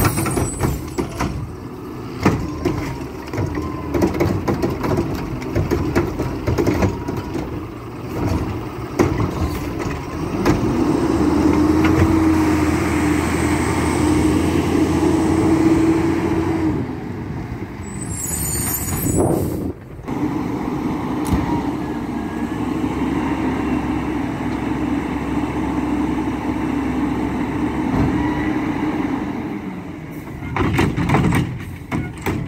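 Mack LEU garbage truck's diesel engine running, with clanks and knocks from the Curotto-Can arm handling a cart in the first third. The engine then holds a steady drone, broken about two-thirds through by a short air-brake hiss, before droning on again.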